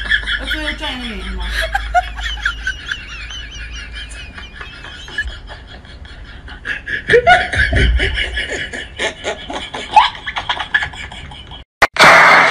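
People laughing and snickering, mixed with short bits of speech. The sound cuts off abruptly just before the end.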